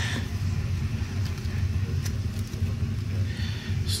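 A steady low rumble runs throughout, with faint rustling of plastic packaging near the end.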